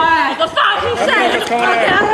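Several high-pitched voices calling and talking over one another.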